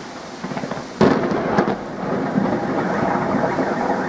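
Thunder from a nearby lightning strike: a sudden sharp crack about a second in, followed by continuing rumbling.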